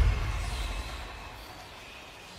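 A deep low rumble that swells to its peak right at the start and fades over the next second, leaving a quieter low drone with a faint hiss above it: ambient sound design under a dark, wordless TV drama scene.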